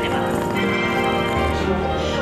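Background music with many sustained, chiming, bell-like tones; a low note comes in near the end.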